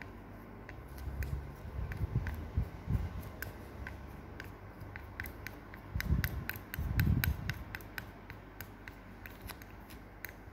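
Small scissors snipping plush toy fur around its eye, a steady run of crisp little snips, two or three a second. There is muffled rubbing and handling noise from the plush being held, twice.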